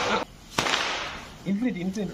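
A firecracker goes off with a sharp bang about half a second in, its noise trailing away over most of a second. It follows the end of an earlier crackling burst at the very start, and a voice calls out near the end.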